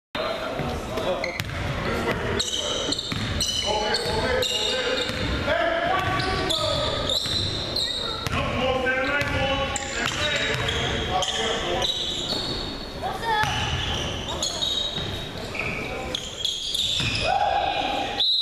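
Basketball game sounds in a large gym hall: a ball bouncing on the hardwood floor and sneakers squeaking, with players' voices in the echoing room.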